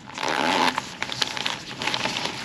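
Plastic mailer bag torn open in one rasping rip lasting about half a second, then crinkling and crackling as the torn plastic is pulled apart and handled.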